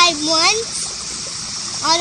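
Speech: an adult man's voice speaking a word at the start and resuming near the end, over a steady background hiss that fills the pause between.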